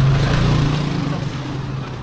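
Motor scooter engine running as it passes close by, its steady hum loudest at first and fading away over the next second or so.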